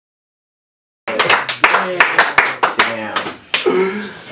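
Silence for about a second, then a small crowd clapping in scattered, uneven claps over overlapping talk, in a small room.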